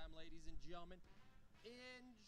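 A faint voice in drawn-out, wavering tones, once in the first second and again near the end.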